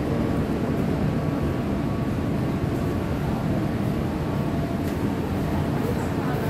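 Steady low rumble and hum of rail-station background noise, with no distinct events.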